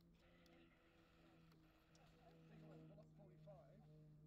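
Faint, distant drone of an aerobatic propeller airplane's engine, a low steady hum that shifts slightly in pitch and grows a little louder toward the end. Faint voices are heard in the second half.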